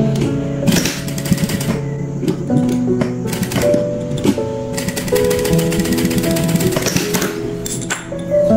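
JUKI industrial sewing machine stitching through quilted cotton fabric, a rapid clatter of needle strokes in quick runs, under background music.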